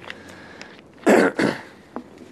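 A man coughing to clear his throat: two short, loud coughs in quick succession about a second in.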